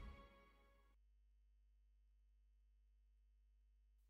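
Near silence: the tail of a music sting dies away in the first moment, leaving only a faint steady hum.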